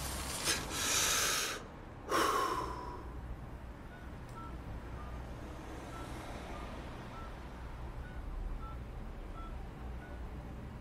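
Sound effects: two loud rushing noises in the first three seconds, the second ending in a falling tone, then a steady low rumble with faint, irregular high pips.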